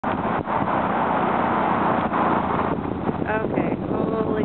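A steady rushing noise for the first two and a half seconds, then a person's voice starting near the end.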